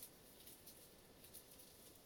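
Faint dry rustling and crackling of dried sphagnum moss crumbled between the fingers, with a few soft ticks as bits fall into the moss mix.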